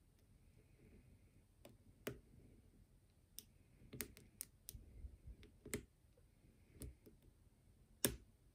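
Irregular, faint metallic clicks and ticks of a hook pick and tension wrench working the pins inside a DOM 333S half-euro cylinder lock, about ten over several seconds, the sharpest click at the very end.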